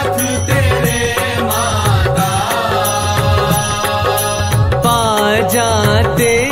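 Hindi devotional bhajan-aarti music: a wavering melodic line over a steady, repeating drum beat, between the sung verses.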